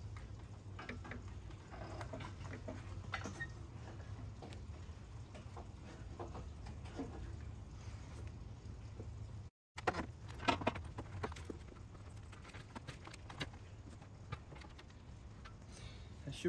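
Scattered light clicks and taps of a new aluminium A/C condenser and the surrounding metal and plastic as it is handled and worked into place in a pickup's front end, with a steady low hum underneath. The taps come in small clusters, busier in the second half.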